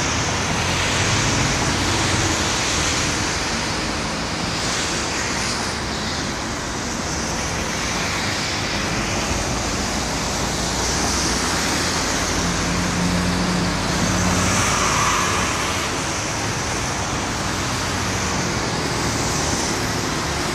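Steady road traffic noise from vehicles passing close by, with a low engine hum that swells briefly about two-thirds of the way through.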